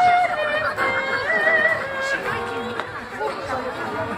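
A soprano singing with a wide vibrato, her notes held and wavering, over acoustic guitar accompaniment.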